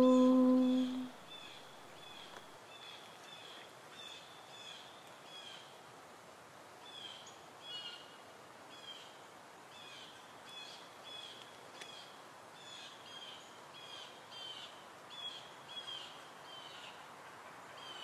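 Faint, short high chirps of a small bird, repeated two or three times a second, over a quiet outdoor background hiss.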